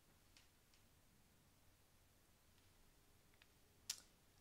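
Near silence: room tone, with a few faint ticks and one sharper click just before the end.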